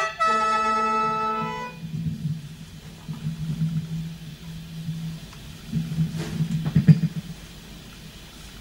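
Khaen (Lao bamboo free-reed mouth organ) sounding a final held chord of several reedy notes, which stops about a second and a half in. Low, uneven rumbling with a few knocks follows; the loudest knock comes near the seventh second.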